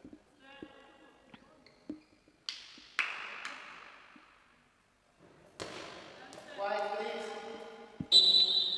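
A goalball, the bell-filled ball of the game, knocking twice about two and a half and three seconds in as it is handled, its bells rattling and fading after each knock; another knock comes later, and brief voices are heard near the start and near the end.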